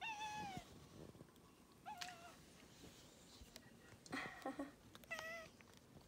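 An orange tabby cat meows four times in short calls, a second or two apart. The first call falls slightly in pitch.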